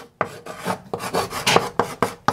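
Chalk scratching on a blackboard as a word is written, in a quick series of short, irregular strokes.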